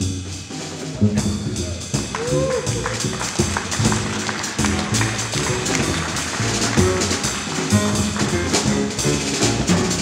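Live acoustic jazz: grand piano, upright double bass and drum kit with cymbals playing together at a steady pulse.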